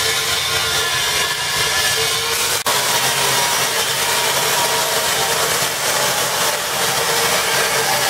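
Angle grinder cutting steel under a car's body, running steadily under load with a high whine and a harsh grinding hiss, broken for an instant about two and a half seconds in.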